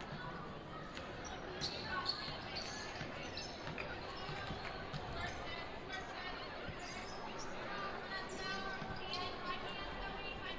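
Basketball dribbled on a hardwood gym floor during live play, with the sharpest knocks about two seconds in, over players and spectators calling out and talking in a large gym.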